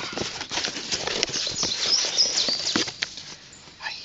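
A cardboard box being opened by hand: cardboard flaps and the paper inside rustling and scraping, with a run of sharp clicks and knocks. It goes quieter about three seconds in.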